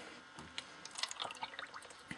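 A drink poured from a pitcher into a cup, a faint trickle with small splashes and drips as the cup fills to the top.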